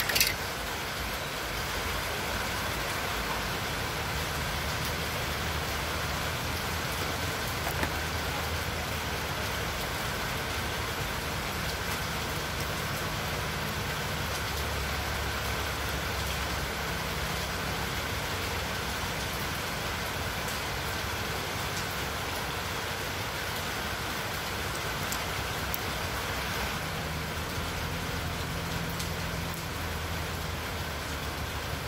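Steady background hiss with a faint low hum under it, broken by a sharp click at the very start and a smaller click about eight seconds in.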